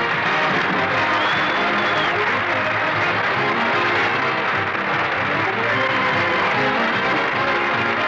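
Radio studio orchestra playing a musical bridge under studio audience applause, closing the comedy sketch.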